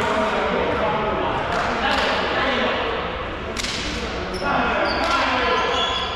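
Players' voices echoing in a large sports hall, with a volleyball bounced on the floor and a few sharp smacks, the loudest about three and a half seconds in.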